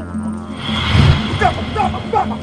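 Dramatic background film music with sustained low tones, a dull thump about a second in, and short cries near the end.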